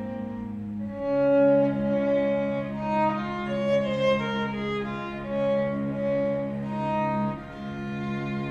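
A small string ensemble of violin and cello playing live. The cello holds long low notes under a slow, moving violin line that swells several times, with a change of harmony about a second in.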